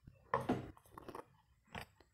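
Drawing instruments and a hand moving over paper on a drawing board: a cluster of short scrapes and rustles, then one more shortly before the end.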